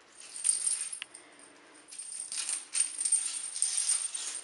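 Small bell on a feather wand cat toy jingling as the toy is jerked about and batted by cats: a short burst early on, then longer jingling from about two seconds in.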